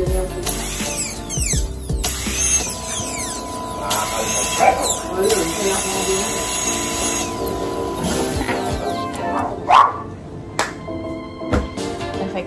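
Dental handpiece whining at a very high pitch as it works on the teeth of a model jaw, stopping about seven seconds in, under background music.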